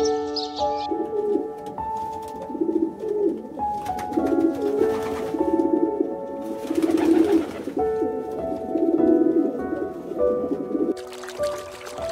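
Rock pigeons cooing, a series of low rolling coos repeated every second or two, stopping about a second before the end.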